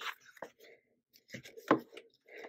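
A few short taps and soft rustles of fingers handling a glossy plastic sticker sheet in a sticker book, the sharpest tap about three-quarters of the way through.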